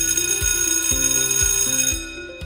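A bright, shimmering chime sound effect comes in suddenly and rings on steadily, laid over background music with a bass line and a beat of about two thumps a second.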